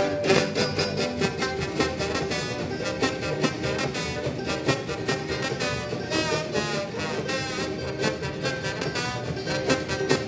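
Live roots band playing an upbeat swing number: upright bass, acoustic guitar, banjo and drums keeping a steady beat, with a brass line carrying the tune.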